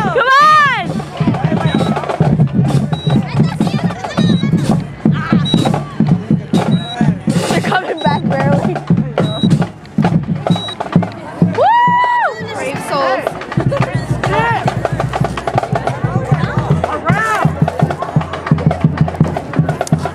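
Stadium crowd noise: shouting and cheering voices over loud music with a drum beat, with a drawn-out pitched shout about twelve seconds in.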